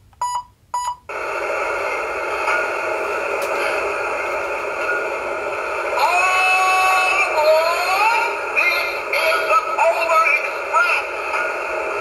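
Recorded sound effects from a battery-powered toy train set's built-in speaker, set off from the remote: a few short beeps, then a continuous tinny playback with held tones that slide up and down about six to eight seconds in. The reviewer calls the remote's sounds extremely obnoxious.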